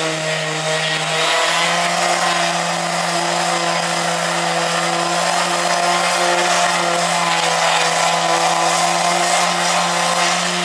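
Electric palm sander running steadily as it sands old paint off a boat's wooden rubbing strip, its motor hum stepping up slightly in pitch about a second in over the scratch of sandpaper on timber.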